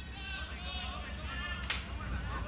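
Distant voices calling out across an open sports field, with one sharp smack about three-quarters of the way through.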